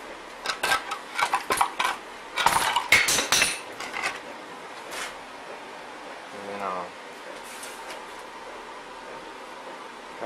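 Sharp metal knocks and clanks as the steel of a wood boiler's frost-damaged door is hammered back into shape: irregular strikes for the first four seconds, with a dense run from about two and a half seconds in, then they stop.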